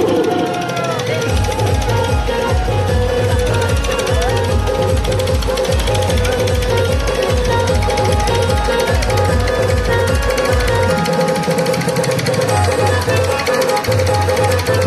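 Loud DJ dance music played through a horn-loudspeaker sound system, driven by a fast, evenly pounding bass beat of about three beats a second. The bass drops out briefly about eleven seconds in, then comes back.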